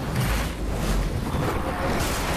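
Steady rushing wind noise with a low rumble from a mountain bike rolling fast down a dirt trail. It cuts in suddenly just before the ride begins.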